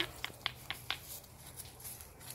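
Dry leaves and twigs crackling in a run of sharp little clicks, about four a second at first, then thinning out.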